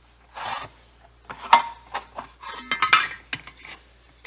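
A rag rubbing and wiping over a freshly pressed thin 2024-T3 aluminium nose rib on a wooden bench, in several strokes, the light sheet giving short metallic clinks and rattles. The sharpest strokes come about a second and a half in and near three seconds.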